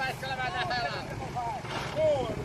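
Excited voices calling out over the low, steady running of an off-road 4x4's engine as it crawls, tilted over, through a deep mud hole.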